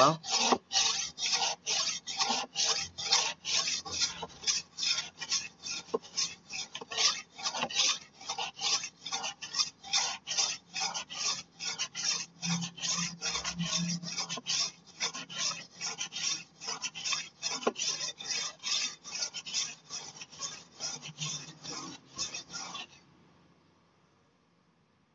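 Golok machete blade being stroked back and forth over the red, finer-grit side of a two-grit whetstone: a fast, even run of rasping strokes, about two to three a second. The strokes stop abruptly near the end.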